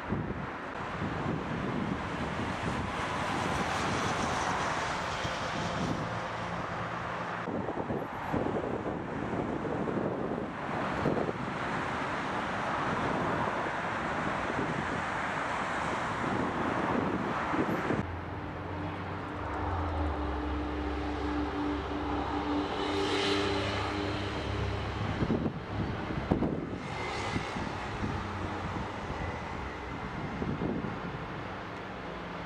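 Outdoor harbourside ambience: a steady wash of wind and distant traffic noise, changing a little past halfway to a steady engine drone with a low hum.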